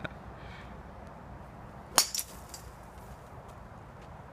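A golf driver striking a teed ball: one sharp crack about two seconds in, followed by a couple of fainter ticks.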